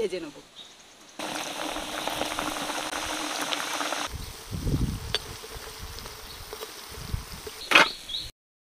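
Jibe goja dough sticks deep-frying in hot oil in a wok, sizzling steadily. The sizzle cuts in about a second in and drops to a quieter hiss about four seconds in, with a few low thumps after that.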